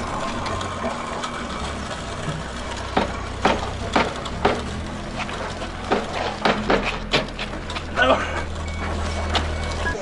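A loaded pallet jack of iron weight plates being pulled over concrete: a steady low rumble with scattered knocks and clanks from the plates, thickest from about three seconds in.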